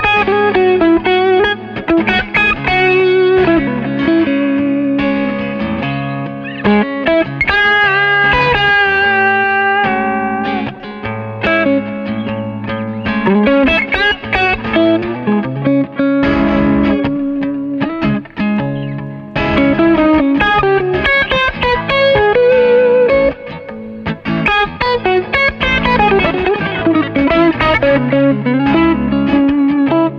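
Electric guitar, a Stratocaster on its Fralin Blues neck pickup, played through a Selmer Mercury Five valve amp and 2x12 cabinet, with continuous single-note lines and chords and only brief pauses between phrases.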